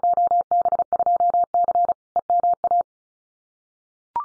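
A computer-generated Morse code tone at one steady pitch, sent at 35 words per minute in rapid dots and dashes. It repeats the Field Day exchange 2B2C, Eastern Massachusetts, and stops about three quarters of the way through.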